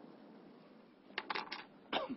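Stylus pen tapping on a tablet screen: a quick cluster of light taps a little over a second in, and one more near the end, over quiet room tone.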